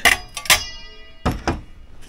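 A welding magnet clacking onto a stack of iron serving plates. There are two sharp metal strikes about half a second apart, and the second leaves the plate ringing briefly. Its grip shows the plates are iron, magnetic. A couple of duller knocks follow about a second later.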